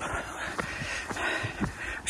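Wind rumbling on the microphone with a light hiss, and a few faint footsteps of a walker on a paved path.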